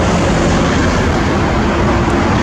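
Steady, loud road traffic noise: a continuous rush of passing vehicles with a low engine hum underneath.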